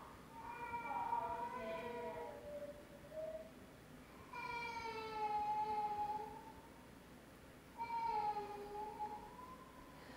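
A toddler crying in three long, drawn-out wails, heard over the lecture hall's playback of a lab video.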